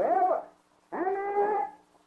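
A voice singing or intoning long held notes in the middle of preaching: one note slides up at the start, and a second is held steady for under a second about a second in.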